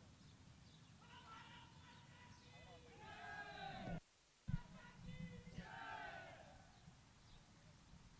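Faint, distant voices calling out twice, each call lasting a couple of seconds, with a brief dropout to complete silence between them about four seconds in.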